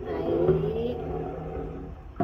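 Plastic squeeze bottle of VIM toilet-and-bathroom cleaner gel being squeezed, with gel squirting from the nozzle onto bathroom tile. A wavering pitched squelch lasts about a second and then fades, over a steady low hum.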